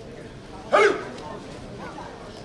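A single short, sharp shout from the mat of a taekwondo contest about three-quarters of a second in, over a steady background of hall noise.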